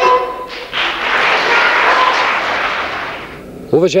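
Bulgarian folk music with a gaida's held tones breaks off abruptly just after the start, giving way to a steady rushing noise lasting about two and a half seconds that fades before a man starts speaking near the end.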